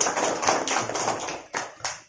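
A group of children applauding, a dense patter of hand claps that thins out to a couple of last claps near the end.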